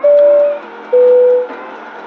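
Airliner cabin PA chime: two clear tones, a higher one and then a lower one, each about half a second long. It signals that a cabin announcement is about to begin. Faint music plays underneath.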